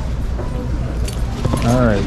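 Steady low hum of a restaurant dining room, with a few light clicks about a second in and a voice near the end.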